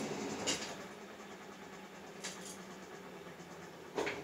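Home-built buggy's motor and drivetrain running unloaded, a steady low hum that drops in level about a second in, with a couple of light clicks.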